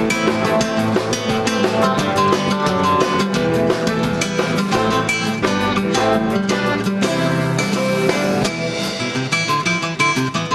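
Classical (nylon-string) acoustic guitar picked in fast runs of notes, with a backing band's drum kit and bass behind it.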